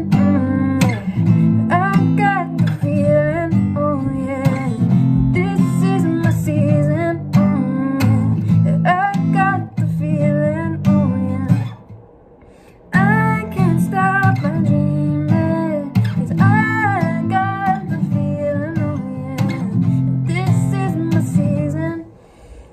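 Acoustic guitar strummed in a steady chord pattern, with a woman singing a melody over it as she works it out on newly changed chords. The playing stops for about a second near the middle, then picks up again.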